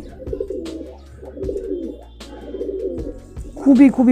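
Domestic pigeons cooing, several low, wavering coos one after another. A man's voice comes in near the end.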